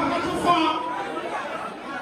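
Voices talking and crowd chatter echoing in a large banquet hall.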